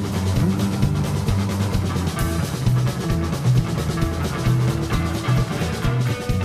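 Live rockabilly band playing: hollow-body electric guitar over an electric bass line and a drum kit keeping a steady beat.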